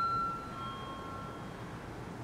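A two-note electronic chime: a higher ding rings at the start and a lower note follows about half a second later, both fading out within about a second and a half.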